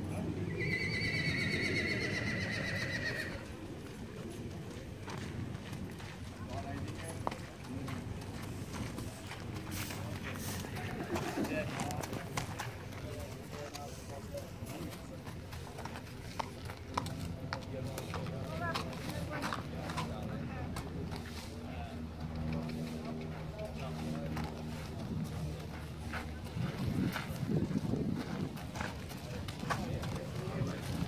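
A thoroughbred's hooves walking on a gravel path as it is led, with people talking in the background. A high, wavering call sounds for about three seconds near the start.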